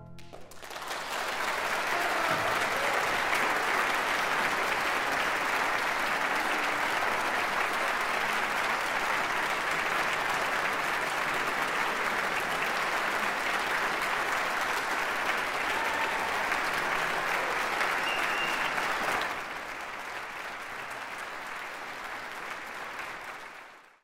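Audience applauding. The applause rises within the first second, holds steady, drops to a softer level about 19 seconds in, then fades out.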